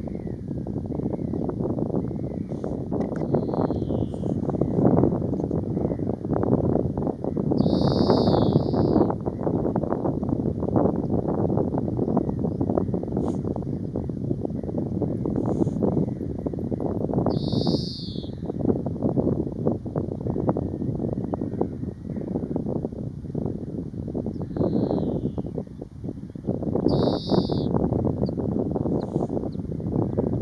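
Wind buffeting the microphone in gusts, with a bird calling now and then over it: a high call about a second long, repeated three times about nine seconds apart, with fainter short falling notes between.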